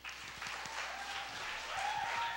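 Audience applauding, starting suddenly at the close of a spoken testimony and carrying on steadily.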